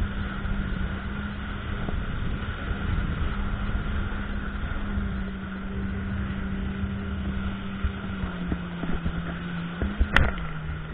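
Jet ski engine running at speed with a steady note over the rushing hiss of its jet wake spray. The engine note drops slightly about eight seconds in.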